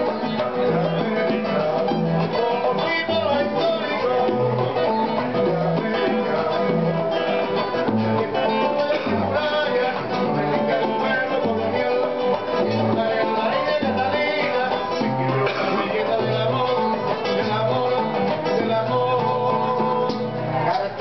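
Live acoustic Latin American music: two acoustic guitars played together with hand-played bongos, with a steady, repeating bass line.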